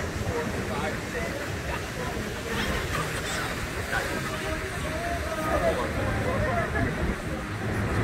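Background chatter of several people talking at a distance, over steady wind noise rumbling on the microphone.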